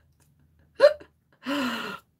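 A woman's wordless vocal sounds: a short, loud burst sliding up in pitch just under a second in, then a held voiced sound for the last half second.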